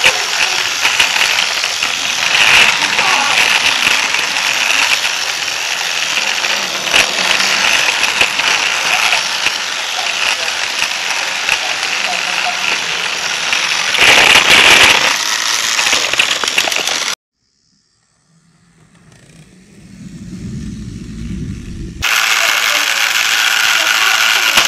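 Battery-powered toy train on plastic track, its motor, gears and wheels running loudly and steadily with a rattle right at the camera it carries. About two-thirds in the sound cuts off suddenly; a low rumble then builds, and the running noise comes back just as suddenly.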